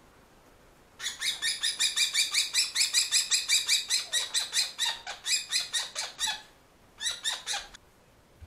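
Kestrel calling: a fast, even run of sharp, high-pitched calls, about six a second, lasting some five seconds, then a shorter run after a brief pause.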